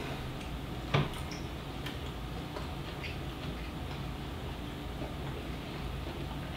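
Quiet room with a steady low hum and faint, sparse ticks and clicks, the sharpest about a second in.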